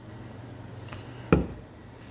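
A handheld aluminium beer can being moved, giving one sharp knock about a second and a half in, with a faint tick just before it.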